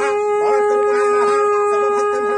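Conch shell (shankh) blown in one long, steady note held without a break, with wavering voices sounding over it.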